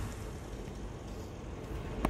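The last of a large felled tree's crash to the ground fades out, leaving a steady low outdoor rumble and hiss.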